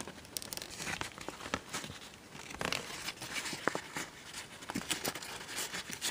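Printer paper crinkling and rustling in a run of irregular small crackles as fingers pinch and push creased pleats into a many-layered origami model.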